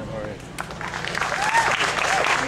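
Audience applause that starts about half a second in and builds, with a few voices calling out among the clapping.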